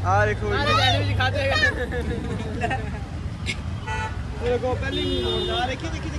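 Street traffic with people talking and laughing close by; a vehicle horn sounds once, steadily, for under a second about five seconds in.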